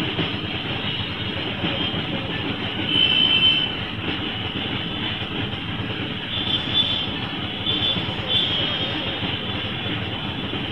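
Auto-rickshaw's small engine idling with a steady, rattling rumble while the vehicle stands still. A few brief high-pitched tones come in about three seconds in and again a few times between about six and a half and eight and a half seconds.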